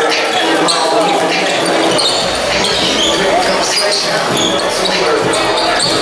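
A basketball being dribbled on a hard court floor, with players and spectators calling out, echoing in a large hall.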